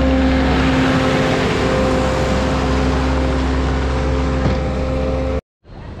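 Bobcat compact track loader's diesel engine running steadily at close range: a steady low hum with even pitched tones above it. It cuts off suddenly near the end.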